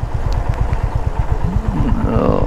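Motorcycle engine running at low road speed, heard from the rider's seat as a steady low pulsing of exhaust beats over wind and tyre noise.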